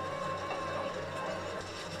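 Quiet soundtrack music from the episode playing low: a held note that fades out near the end, over a low, steady drone.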